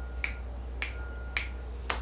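Finger snapping: four crisp snaps about half a second apart.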